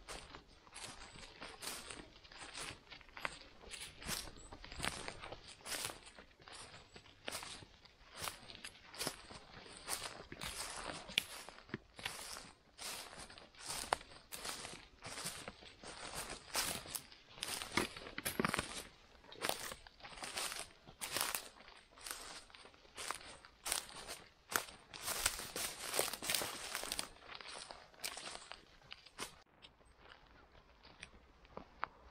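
Close crackling, snapping and rustling of moss and forest litter as hands pick winter chanterelles from the ground and handle them, with many irregular sharp crunches a second throughout.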